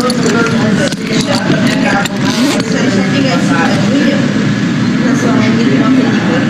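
A man's voice speaking indistinctly over steady background noise, from a played sketch.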